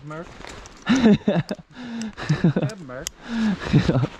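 A man talking in short phrases, with brief pauses between them.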